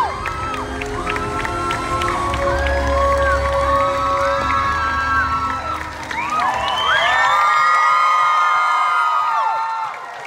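A large audience cheering and screaming, many high voices shrieking and whooping at once. Music plays over the hall's sound system under the cheering for the first several seconds and fades out, and the screaming swells again about two-thirds of the way through.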